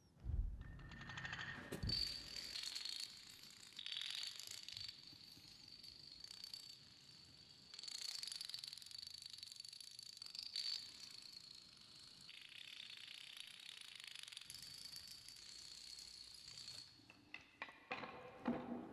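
A long chain of small dominoes toppling on a concrete floor: a fast, continuous clatter of clicks. Near the end it breaks into a few separate, louder clicks as the larger pieces start to fall.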